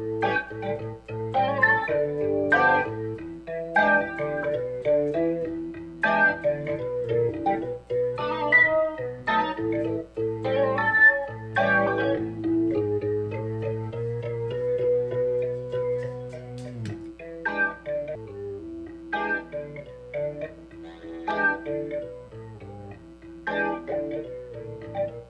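Electric guitar played through an organ-voice effect, giving organ-like sustained tones: a slow, freely played melody of picked notes with a long held chord about two-thirds of the way through that cuts off suddenly.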